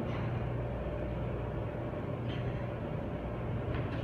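Schindler 300A hydraulic elevator car travelling up, heard from inside the cab: a steady low hum and rumble of the ride, with a faint tick about two seconds in.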